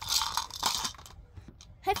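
Small plastic toy pieces clattering and rattling as the toys are handled, for about the first second, then fading.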